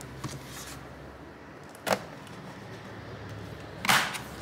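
A few sharp clicks and knocks from the laptop's aluminium bottom cover being handled and pressed into place: small clicks just after the start, a louder click about two seconds in and another near the end.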